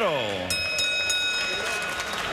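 A ring announcer's amplified voice draws out the last syllable of the winner's name, falling steeply in pitch and trailing off into the arena's echo. From about half a second in, a few steady high tones sound over a noisy background.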